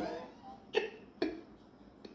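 Two short, sharp coughing bursts from a man, about half a second apart, after a spoken word trails off.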